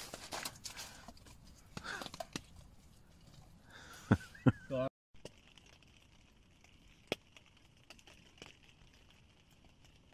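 Rustling and handling noise with a few sharp knocks, then after an abrupt cut about halfway in, the faint steady hiss and occasional small crackles of a wood fire burning in a small tent stove.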